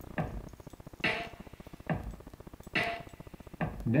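Electronic drum pattern at about 140 beats per minute played through a subwoofer: kick and snare alternating, five hits evenly spaced a little under a second apart.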